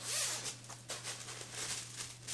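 A fleece zip-up hoodie being unfolded and held up: a loud fabric swish at the start, then a few shorter rustles of the cloth and its zipper.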